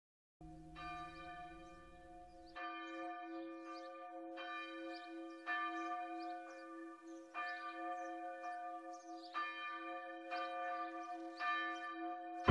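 A church bell tolls, struck about every one to two seconds, its hum ringing on steadily between strikes. A low rumble underneath stops about two seconds in.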